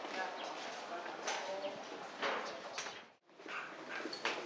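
Busy background ambience: faint voices and scattered sharp clacks. It drops out abruptly about three seconds in at an edit, then picks up again as a different background.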